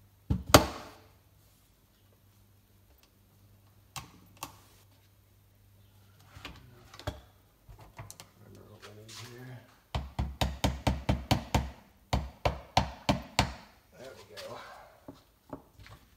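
Metal clicks and knocks of a Mossberg 535 pump shotgun's parts being fitted back into the receiver during reassembly. There is one sharp click just after the start, two lighter knocks about four seconds in, and a quick run of about a dozen taps about ten seconds in.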